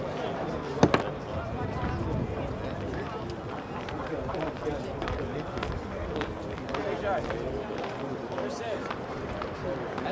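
Indistinct chatter of many voices across an outdoor sports field, with a sharp knock about a second in.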